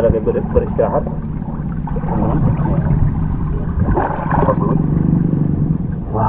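Indistinct voices, near the start and again about four seconds in, over a steady low hum.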